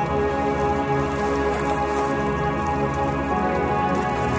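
Calm ambient music of long, steady sustained tones, layered with the sound of falling rain.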